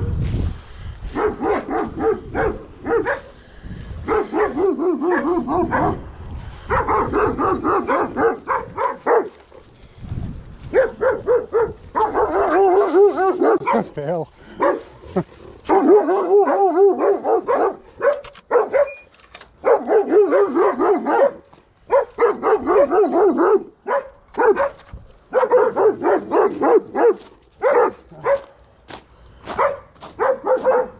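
Dogs barking persistently in rapid runs with short pauses between: guard-dog barking, alarmed by a stranger passing the property.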